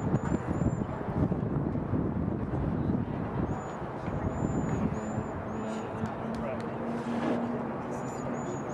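Outdoor sports-field ambience: indistinct distant voices over a steady low rumble. A series of short, high chirps comes in the first second and again from about three and a half seconds, and a low steady hum joins for a few seconds near the end.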